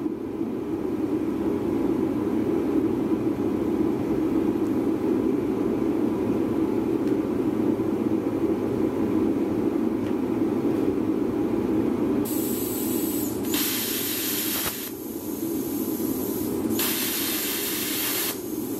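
Wire-feed welder arc crackling in three short bursts of about a second each, starting about 12 seconds in, as expanded metal mesh is tack-welded to a steel tractor brush guard, over a steady low hum.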